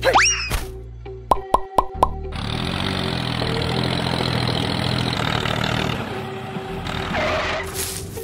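Cartoon sound effects over background music. A quick rising whistle is followed by four short plops about a quarter second apart, then a steady engine-like running sound for about four seconds for the toy tractor.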